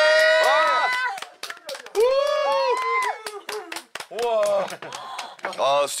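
Several people exclaiming in delight and clapping their hands, a quick run of claps between long drawn-out cries of excitement.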